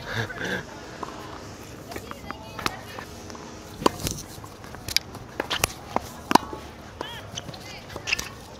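Tennis balls being struck by rackets and bouncing on a hard court during a rally: a string of sharp pops at uneven intervals, the loudest about six seconds in.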